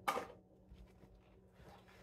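Items handled in a reusable tote bag: a brief sharp rustle at the start, then faint scattered rustling as she digs through the bag.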